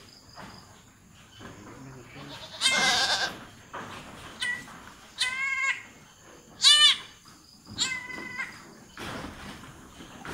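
Goat bleating about five times, the loudest and longest call about three seconds in. These are the calls of a doe in difficult labour (dystocia) while she is being helped by hand.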